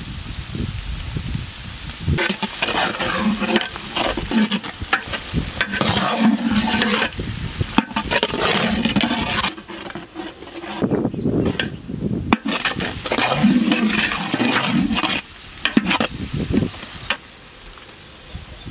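Chopped vegetables frying in oil in a large cooking pot, sizzling, while a metal ladle stirs and scrapes through them in repeated strokes, with a pause in the stirring about halfway through.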